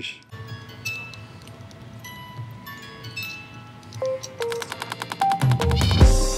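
A tiny hand-cranked music box plucking its tune quietly, single ringing notes one after another, while it sits on a pad of damping material that holds its sound down. About four seconds in, background music with a fast regular beat comes in and gets louder.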